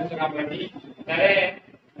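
A man speaking, drawing one syllable out for about half a second a little past the middle, then a short pause near the end.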